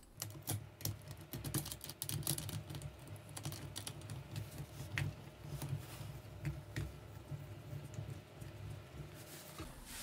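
A KF clamp being fitted by hand around a glass flange and a stainless steel flange on a vacuum pump inlet and its wing nut closed: a run of small, light metal clicks and taps over a faint steady low hum.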